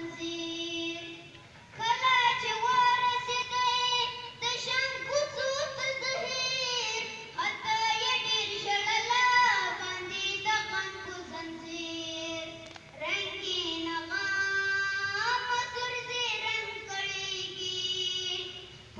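A boy singing solo into a microphone, long held notes that slide in pitch, in phrases with short breaks between them.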